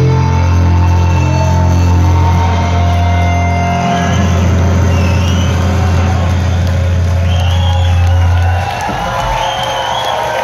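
Live rock band's electric guitars and bass holding a loud, sustained droning chord that cuts off about eight and a half seconds in. Crowd whoops and cheers rise over it in the second half.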